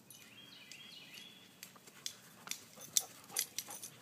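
A dog close to the microphone making a run of short sharp clicking sounds, loudest about three seconds in, with a bird chirping faintly in the first second.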